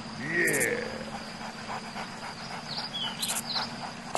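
A short animal call, used as a dubbed sound effect, with a pitch that rises and falls, about a quarter of a second in. Quieter scattered clicks and a few short high chirps follow.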